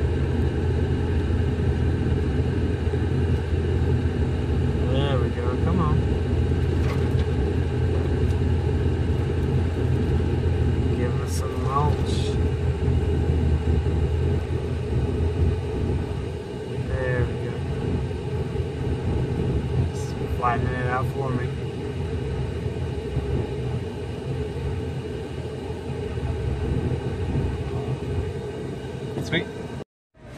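Steady low engine rumble heard from inside a vehicle cab, easing off about halfway through.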